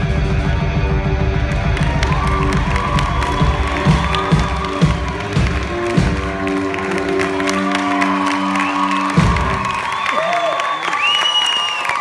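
One-man-band blues on guitar with a foot-played bass drum, playing the closing bars of a song that stop sharply about nine seconds in. The audience then cheers and whoops.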